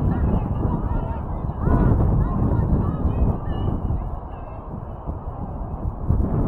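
Wind buffeting the microphone, with short honking calls now and then.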